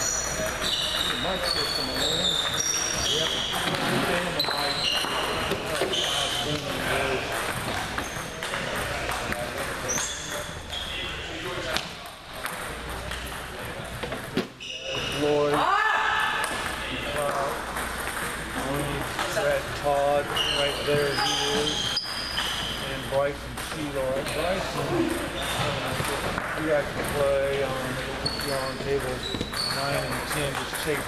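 Table tennis balls being struck and bouncing off paddles and tables, a run of short, high, hollow clicks from rallies on several tables, with people talking in the background.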